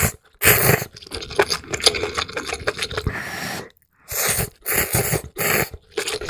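Close-miked slurping of ramen noodles with broth. A long stretch of wet chewing with many small clicks follows, and near the end come three short slurps.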